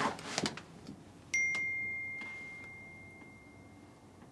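Phone text-message notification chime: a single bright ding about a second in that rings on and fades slowly. It is preceded by a few faint clicks.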